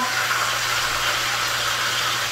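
Fish frying in a pan of hot oil, a steady sizzle, over a steady low hum.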